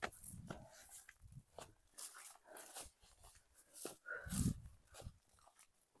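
Footsteps rustling through dry grass and brush, with one short, faint dog sound about four seconds in.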